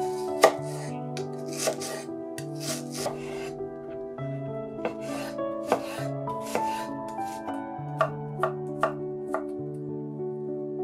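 Kitchen knife dicing an onion on a wooden cutting board: about a dozen irregular knife strikes on the board with the crunch of the onion being cut, the sharpest strike about half a second in.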